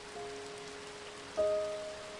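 Steady hiss of falling rain under slow, soft background music: a single held note near the start and a louder chord struck about one and a half seconds in.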